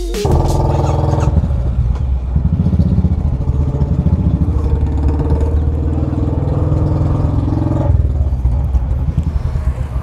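Royal Enfield Classic 500 single-cylinder engine running, the revs rising and falling between about two and five seconds in before it runs steadily.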